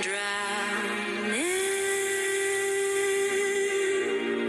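Song with a sung voice holding a long note, sliding up to a higher note about a second and a half in and holding it steadily to the end.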